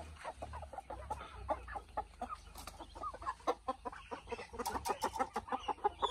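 Burmese gamefowl clucking rapidly and continuously while a bird is grabbed by hand from a wire cage, with a few sharp clicks about five seconds in.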